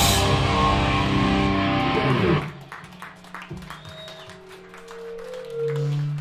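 Live hardcore band playing distorted electric guitars, bass and drums, then cutting off abruptly about two and a half seconds in. Quiet amplifier hum and faint sustained guitar tones linger afterwards.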